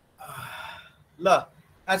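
A man's audible breath into the microphone, lasting about half a second, followed by a short voiced syllable and the start of his speech near the end.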